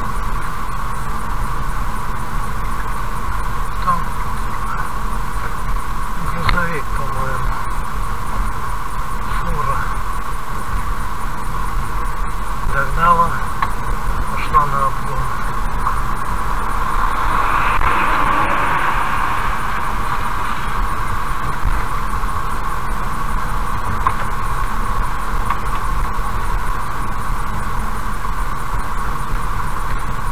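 Steady road and engine noise of a car driving at moderate speed, heard from inside the car, with faint speech now and then and a brief swell of rushing noise just past the middle.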